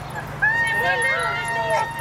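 A small dog whining in one long, level high note that starts about half a second in and lasts over a second.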